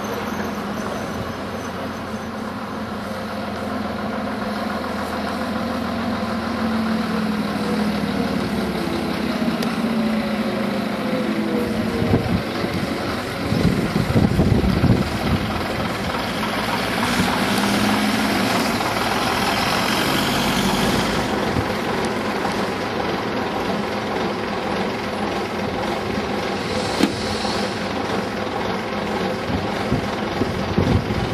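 Vintage double-decker bus engine running as the bus pulls away and drives past close by, its note rising over several seconds, followed by a few seconds of hiss and steady engine running.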